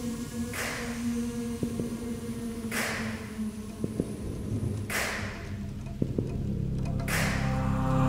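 Tense film-trailer score: a held low drone with a breathy whoosh about every two seconds and a few scattered clicks, swelling in loudness toward the end.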